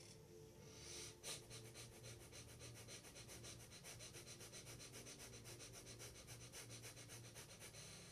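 Breath of fire (kundalini yoga pranayama): a person breathing forcefully and rapidly through the nose. After a fuller breath about a second in, it settles into an even rhythm of several short, faint puffs a second.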